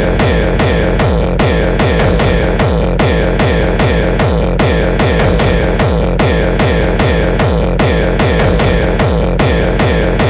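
Electronic hardcore techno music: a fast, steady kick drum beat, each kick dropping in pitch, under a sustained synth tone, with no vocals.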